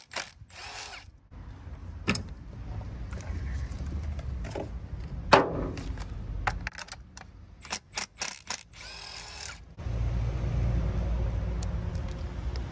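Cordless power tool working a spark plug loose from the engine head, with clicks and knocks from the tools and plastic parts being handled. There is a sharp click about five seconds in and a steadier run of the tool over the last two seconds as the plug comes out.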